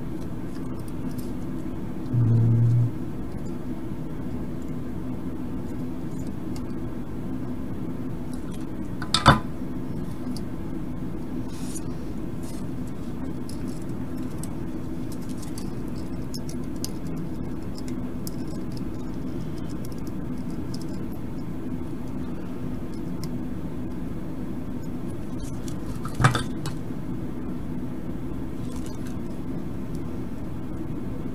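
Small metal tools on an electronics workbench give two sharp clinks, one about nine seconds in and one near twenty-six seconds, over a steady low hum. A short low buzz sounds about two seconds in.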